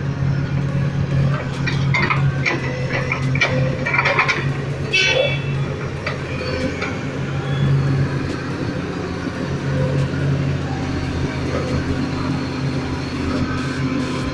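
L&T-Komatsu hydraulic excavator's diesel engine running steadily under load while it works a bucket of soil over a tipper truck. Short knocks and clatter come in the first few seconds.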